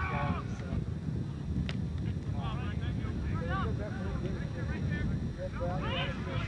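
Distant, indistinct shouting from rugby players and spectators over a steady low rumble of wind on the camcorder microphone, with a single sharp click a little under two seconds in.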